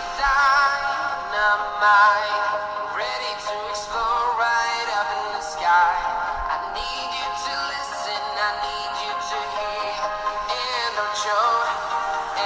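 Music with singing played through the Lepow DualViews Pro's built-in 2-watt stereo speakers, as a speaker test of a pre-release sample. The sound is thin, with little bass beneath the voice and instruments.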